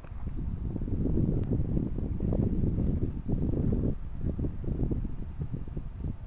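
Wind buffeting the microphone: a heavy low rumble for the first four seconds or so, then weaker and gustier.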